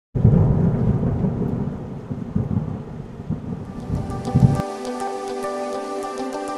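Thunder rumbling over steady rain, the low rumble cutting off suddenly about four and a half seconds in. Music with held tones and a ticking beat takes over from there.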